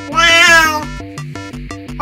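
A 20-year-old calico cat gives one loud meow a moment in, rising and then falling in pitch, over background music with a steady repeating beat.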